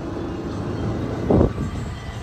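Motor scooter being ridden along a street: steady engine and road noise with a short, louder sound about one and a half seconds in.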